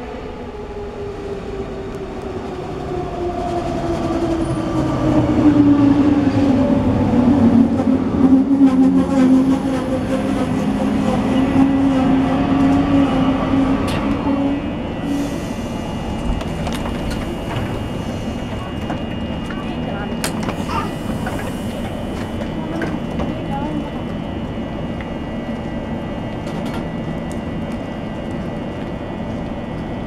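A DB Class 420 S-Bahn electric train braking into the station: its motor whine falls steadily in pitch as it slows, loudest around six to nine seconds in, and dies away as the train stops about halfway through. It then stands with a steady high hum.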